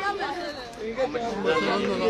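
Several people's voices talking and calling over one another, as indistinct chatter.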